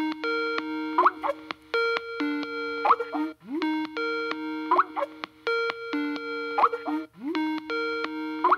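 Skype call ringtone: a short electronic chime phrase that opens with an upward swoop, repeating about every two seconds.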